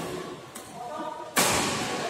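Badminton racket striking a shuttlecock with a sharp, loud smack about one and a half seconds in, ringing on in the large hall, over players' voices.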